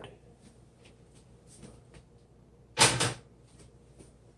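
A short, sharp double clunk about three seconds in as a metal frying pan is handled and lifted off a silicone trivet; otherwise only faint room noise with a few light ticks.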